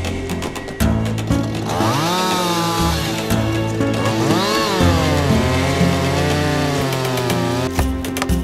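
Two-stroke chainsaw cutting into the base of a tree trunk, its engine pitch swooping up and down as it revs and loads in the cut, starting about two seconds in and stopping just before the end, over background music.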